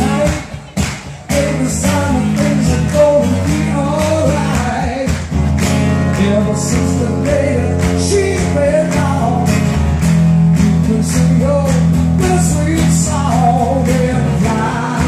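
Live acoustic blues: a man singing and strumming a steel-string acoustic guitar, amplified through a PA, with the audience clapping along in time. The sound dips briefly about a second in, then the song carries on.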